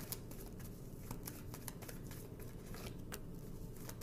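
Tarot cards being handled and shuffled, a run of light card clicks and flicks, with a card laid down on the spread.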